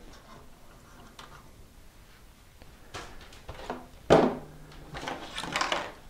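Hands handling a desktop PC tower: a few short knocks about three seconds in, a sharper knock about a second later, then scraping and rustling.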